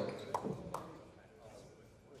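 A public-address announcer's voice ends and dies away in the echo of a gymnasium, followed by a few sharp knocks and then faint crowd chatter in the large hall.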